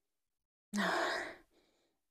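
A woman's single audible sigh, lasting under a second and starting a little under a second in, as she smells a perfume on her hand.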